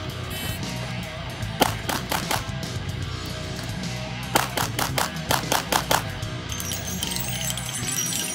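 Pistol shots fired in fast strings during a practical-shooting stage: about four shots, then after a short pause a quicker string of about eight, over background music.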